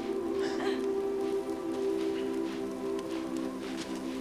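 Film score holding low chords, with irregular crunching over it from footsteps in snow.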